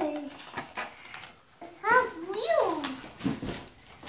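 A toddler's high-pitched wordless vocalising: a short call at the start and two rising-and-falling calls about two seconds in, with a few light clicks between.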